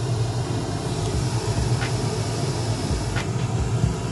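Pink noise playing steadily through studio monitors as a test signal for measuring the room's response, with a couple of faint clicks.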